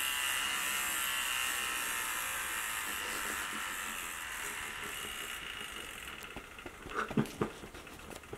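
Cordless electric shaver buzzing against a beard, its hum growing steadily weaker as its nearly flat battery runs down. A few short sounds come near the end.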